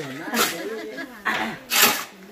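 Shovel blades scraping through a pile of wet cement mix on a concrete slab during hand mixing: three short scrapes, the loudest near the end.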